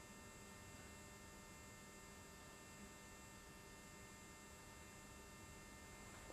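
Near silence: a faint, steady electrical hum with hiss.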